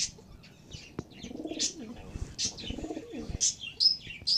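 Pigeons cooing, with two low, arching coos about a third and three-quarters of the way through, over many short high-pitched bird chirps.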